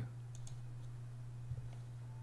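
A few faint clicks, a couple near the start and one about a second and a half in, over a steady low hum.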